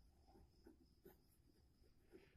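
Near silence: room tone with a few faint soft ticks.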